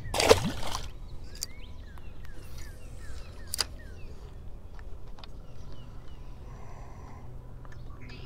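A splash as a bass is let go and drops back into the lake, about a third of a second in, followed by quiet outdoor background.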